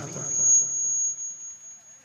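A single steady, high-pitched electronic tone, held for about two seconds and then cutting off.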